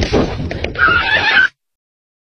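A noisy stretch, then a loud, high, wavering whinny like a horse's neigh, about three-quarters of a second long, that cuts off suddenly.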